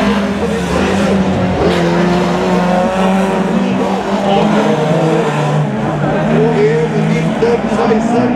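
Rallycross car engines running hard on the circuit, the engine notes rising and falling as the cars accelerate and lift.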